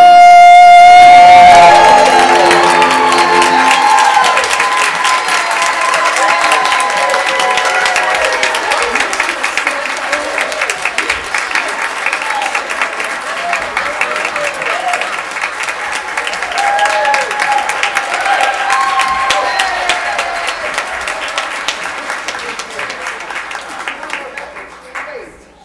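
Two children's voices hold a final sung note that ends about two seconds in. A church congregation and choir then applaud, with voices calling out over the clapping, and the applause tapers off near the end.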